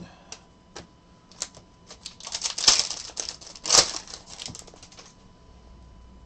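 Stiff chromium trading cards sliding and flicking against each other as a stack is thumbed through: a run of small clicks, with two louder scraping flurries in the middle, that dies away about five seconds in.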